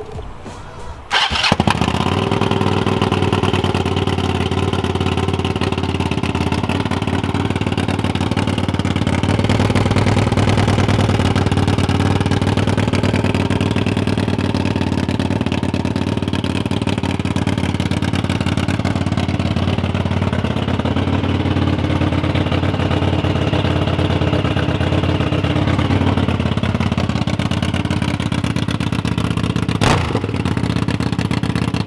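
Stroked Suzuki TL1000R V-twin motorcycle engine firing up about a second in, then running steadily at idle through its dual exhaust, a little louder for a few seconds around ten seconds in.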